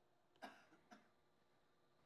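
Near silence, broken by two short, soft throat sounds from a person about half a second apart, like a small cough or clearing of the throat.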